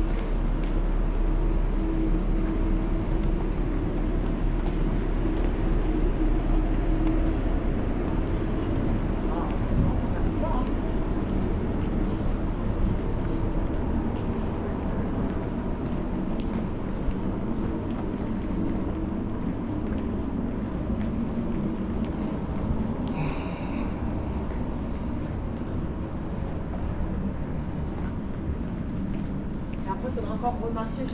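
Airport terminal ambience heard while walking: a steady low hum with a murmur of distant voices. A few short high beeps come through, and a brief chime about 23 seconds in.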